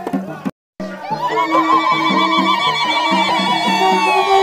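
Festive music with a repeating low beat; after a brief dropout about half a second in, women ululate in long, wavering high trills over it.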